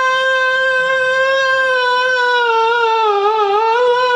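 Unaccompanied man's voice holding one long, high sung note of a nazm (devotional poem), steady at first and wavering in pitch in the second half.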